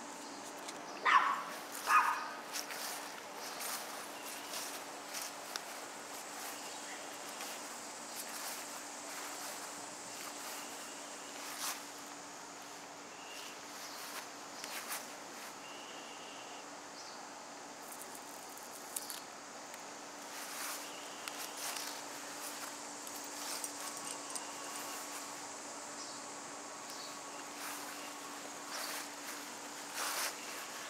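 A dog barking twice, short barks about one and two seconds in, over a steady faint outdoor background with scattered small clicks and rustles.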